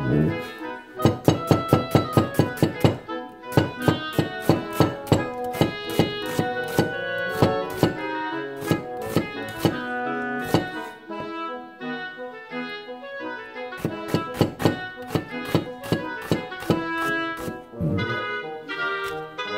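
Kitchen knife slicing an onion on a plastic cutting board in quick runs of about five strokes a second, broken by short pauses, over background keyboard music.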